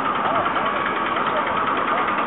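Faint voices of people over a steady background hum of engine noise.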